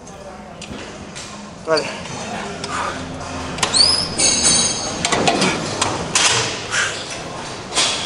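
Gym machines knocking and clanking in a large echoing hall, with a brief high rising squeak about four seconds in and a man's voice saying "vale" early on.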